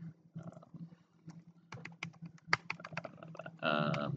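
Computer keyboard typing: a quick run of keystrokes about two seconds in, over a low steady hum, with a voice starting near the end.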